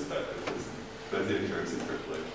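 A man's voice speaking in a lecture hall, with a brief click about half a second in and a steady faint hum underneath.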